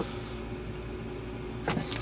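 Faint steady low electrical hum with a thin steady whine over it in a quiet room, broken by a small click at the start.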